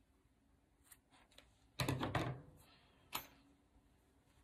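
Metal scissors snipping yarn: a few faint clicks of the blades, then a louder, fuller handling sound about two seconds in and one sharp click a little after three seconds.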